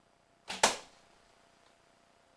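A 48-lb Black Widow PLX longbow is shot: a short string thump on release, then a fraction of a second later a much louder, sharp smack as the arrow hits the target, with a brief room echo.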